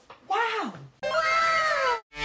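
A man's drawn-out exclamation that slides down in pitch, then an abrupt cut to a cartoon girl's high-pitched voice holding one long, cat-like note that falls in pitch.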